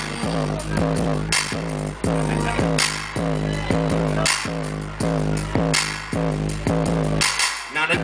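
Live hip-hop beatboxing into a handheld microphone: a fast rhythm of mouth-made percussion with a sharp hit about every second and a half, over a steady low bass drone. The low drone drops out briefly near the end.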